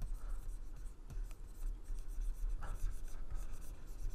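Pen stylus scratching across a graphics tablet's surface in a run of short, quick drawing strokes.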